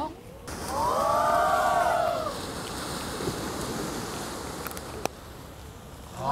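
A single wordless voice sound, rising and then falling in pitch over about two seconds, followed by a steady background hiss.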